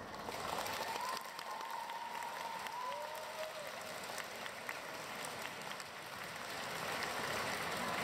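Audience applauding after a stage performance ends, with a long high-pitched call rising out of the crowd about half a second in and trailing off by about three and a half seconds. The clapping grows louder near the end.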